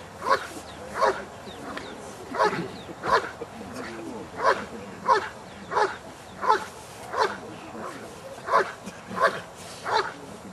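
Belgian Malinois barking in an even rhythm, about one sharp bark every two-thirds of a second, as it guards a Schutzhund protection helper.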